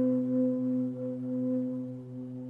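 Shakuhachi mood music: one long held low note on the bamboo flute, slowly fading.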